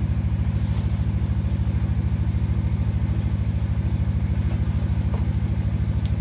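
An engine running steadily: a low hum with a fast, even pulse.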